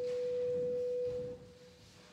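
A single steady pure tone, held and then fading out about a second and a half in.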